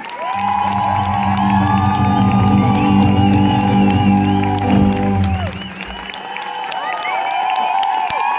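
A strummed acoustic-guitar chord rings out for about five seconds under a crowd cheering, then dies away while the cheering carries on.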